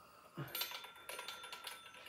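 Small metal parts clicking and clinking against a vintage chrome alarm-clock bell as it is handled. They start about half a second in, and the bell gives a faint, sustained ring under the clicks.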